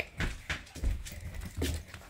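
Footsteps on a hard floor: a series of irregular light taps and clicks.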